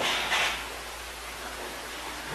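Steady hiss of recording noise, a little stronger about half a second in.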